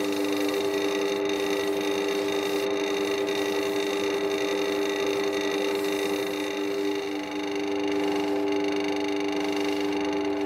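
Wood lathe motor running at a steady speed with a constant hum, while the spinning resin blank is sanded by hand with sandpaper and then polished with a paper towel.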